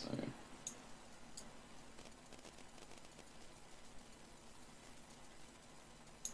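Two faint, sharp clicks, under a second in and again about a second and a half in, over low steady room hiss.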